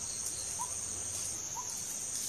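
Insects shrilling steadily at a high pitch, with soft short chirps repeating about once a second.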